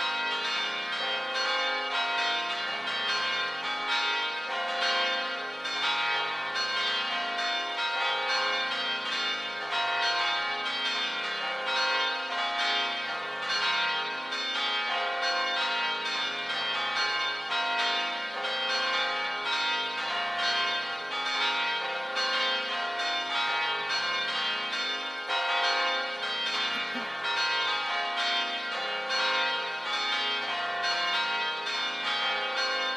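Church bells pealing: many bells struck in quick, continuous succession, their tones ringing on and overlapping.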